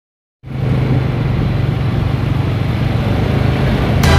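A vehicle's engine running steadily while driving, with road and wind noise, heard from on board. It cuts in abruptly about half a second in.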